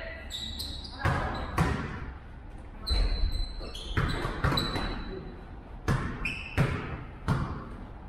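Basketball bouncing on an indoor gym floor in irregular thuds, mixed with short high sneaker squeaks and players' voices echoing in a large hall.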